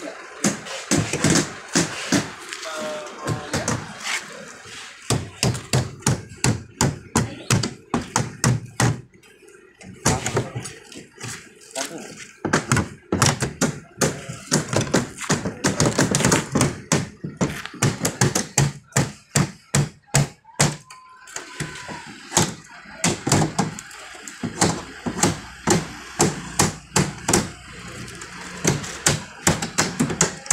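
Irregular knocks and taps on a plywood shipping crate as it is worked open by hand, with people talking.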